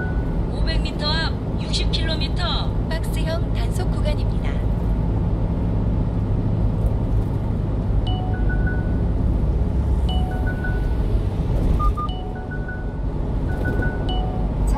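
Steady drone of a small truck's engine and tyres at highway speed, heard from inside the cab. In the first few seconds there is a short stretch of warbling, pitched sound like music or a voice, and from about halfway on, short electronic beeps repeat about every two seconds: a navigation unit's alert as a speed-enforcement camera nears.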